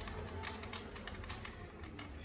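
Light, irregular clicking and tapping of small plastic and metal parts being handled: the fittings of a bicycle phone mount being worked by hand.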